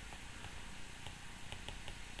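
Faint taps of a stylus writing on a tablet screen, a few short light clicks in the second half, over a low steady room hiss.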